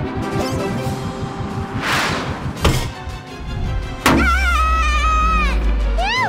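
Cartoon background music with sound effects laid over it: a rush of noise about two seconds in, then a sharp hit, and a second hit near the four-second mark followed by a deep low hum and a high, wavering pitched sound.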